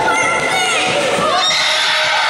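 High-pitched children's shouts and yells overlapping during a karate bout, including a young fighter's shout (kiai) that rises sharply near the end.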